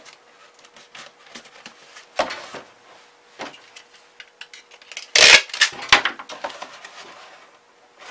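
Corrugated cardboard being folded and handled by hand: scattered rustles and light knocks, with a louder scraping crinkle a little past halfway.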